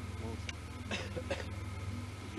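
A man says "là" and gives a short laugh over a steady low hum, with one sharp click just before.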